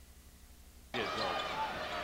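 Near silence, then about a second in the sound cuts in abruptly to a basketball game broadcast: arena crowd noise with a ball bouncing on the hardwood court.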